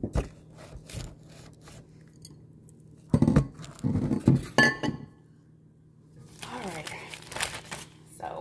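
A clear plastic zip-top food bag crinkling and rustling as it is handled, louder near the end, with a few knocks and clinks of kitchenware on the counter about halfway through.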